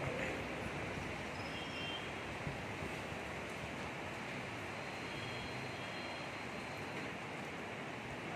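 Steady rushing background noise with no clear source, with a few faint, brief high tones above it.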